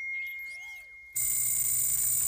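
Cartoon robot electronic sound effects: a thin steady high tone with a short rising-and-falling chirp, then a louder electronic buzz starting about a second in.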